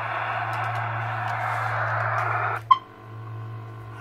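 Modified CB radio keyed for a power test: steady radio hiss over a low hum. About two and a half seconds in, the hiss cuts off with a click and a very short beep, the roger beep as the transmit key is released, leaving a faint steady hum.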